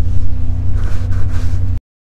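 A steady low engine rumble with a constant hum, cut off abruptly near the end.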